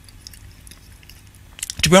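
Faint wet chewing of a mouthful of toast with avocado and chocolate spread, close to the microphone; a man starts speaking near the end.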